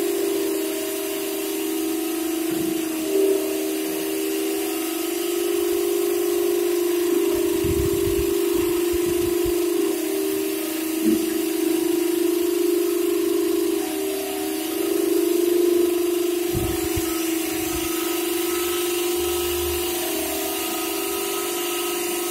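Carpet-cleaning wet vacuum running steadily with a droning whine, sucking through a hose and hand nozzle pressed into wet carpet pile. A few brief low thuds come as the nozzle is worked along the carpet.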